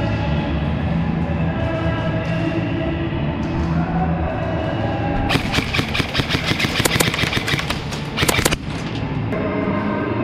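An airsoft rifle firing a rapid string of shots for about three seconds, starting about five seconds in, over background music that plays throughout.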